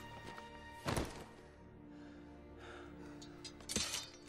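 Quiet orchestral film score with a soft held note. About a second in there is a heavy thud as the stabbed orc's body goes down, and a sharp knock comes near the end.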